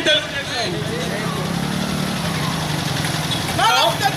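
An engine idling with a steady low hum, under a few short calls from men in the crowd at the start and the end.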